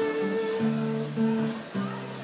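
Live acoustic folk ensemble playing: acoustic guitar with bowed strings. A long held higher note gives way about halfway through to changing lower notes.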